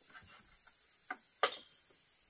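Insects calling in a steady high-pitched drone, with a few light taps of wood being handled and one sharper wooden knock about one and a half seconds in.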